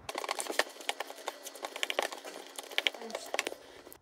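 Silicone spatula scraping and tapping against a glass mixing bowl as flour is stirred into wet carrot batter: a quick, irregular run of light clicks and scrapes that stops about three and a half seconds in.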